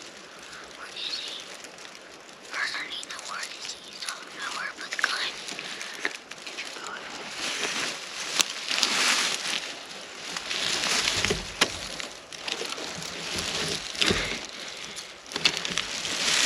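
Hushed whispering, then rustling and a few soft low bumps in the second half as clothing, pine straw and a shotgun are shifted and the gun is raised.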